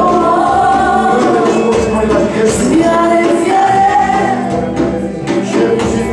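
Christian worship music with a group singing, playing continuously.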